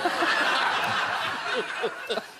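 Studio audience laughing together in a burst of many voices, easing off near the end.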